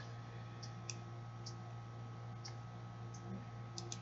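Faint, irregular clicks of a computer mouse, about seven over four seconds, as a spreadsheet is scrolled, over a steady low electrical hum.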